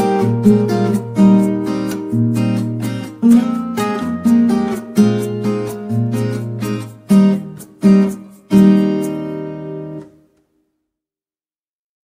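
Background music: acoustic guitar playing plucked notes and strummed chords. A last chord rings out and fades near ten seconds in, then the sound cuts to silence.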